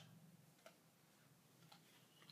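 Near silence with a couple of faint clicks about a second apart, from hands handling a T-shirt on a wooden hanger and its paper tag.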